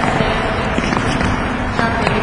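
Steady echoing gym noise from a group of players doing a jump-and-land footwork drill on a hardwood court, with no single sound standing out.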